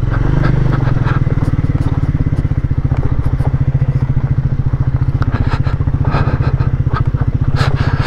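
Triumph Speed 400's single-cylinder engine running at low, steady revs as the motorcycle is ridden slowly.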